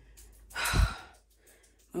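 A woman's single short sigh, a breathy exhale about half a second in, with a low thump at its loudest point.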